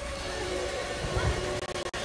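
Film soundtrack of steady rain on a street over a low rumble, with a few faint held tones and a low thump a little past halfway. The sound cuts out briefly twice near the end.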